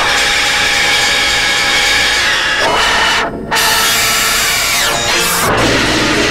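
Harsh, dense industrial noise music from synthesizers: layered drones full of grinding, drill-like noise, with sweeping pitch glides. Briefly cuts out in the high end about halfway through before resuming.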